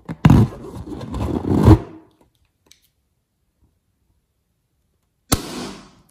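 Slime-filled latex balloon popping about five seconds in, a sharp crack followed by slime gushing out. Before it, for about a second and a half, there is loud handling noise of the balloon being gripped and rubbed.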